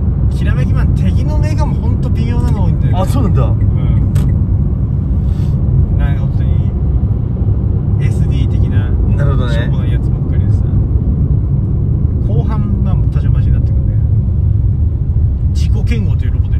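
Steady low road and engine rumble inside a moving car's cabin, with short snatches of voices a few times.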